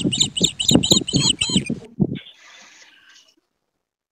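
A bird calling in quick repeated high chirps, about four a second, for roughly two seconds. The sound then fades and cuts off to dead silence at an edit.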